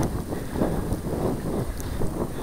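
Wind buffeting the microphone of a hand-held camera: a steady low rumble.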